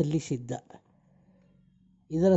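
A voice speaking for under a second, its pitch gliding, then a pause of about a second with only a faint steady hum.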